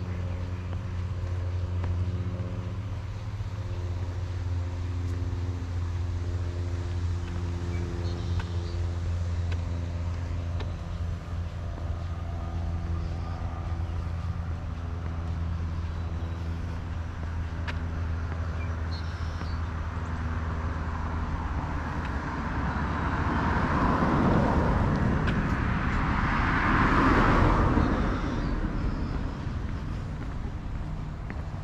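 Road traffic: a steady low engine hum for most of the time, then two vehicles passing close, swelling up and fading away near the end, the second the loudest.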